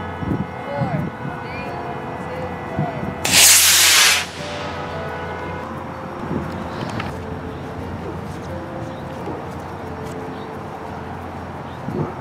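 Model rocket motor firing as the rocket lifts off the launch pad: a loud rushing hiss about three seconds in that lasts about a second and cuts off sharply.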